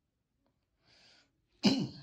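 A person sneezing once: a faint breathy intake about a second in, then a sudden loud sneeze near the end that quickly dies away.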